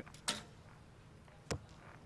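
A recurve arrow striking the target: one short, sharp click about one and a half seconds in, after a brief soft sound near the start, with only faint background otherwise.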